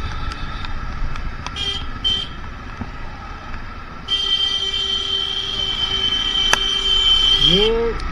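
Motorcycle riding in traffic, with a steady wind and road rumble. A vehicle horn gives two short toots about a second and a half in, then a held blast of about three and a half seconds from about four seconds in.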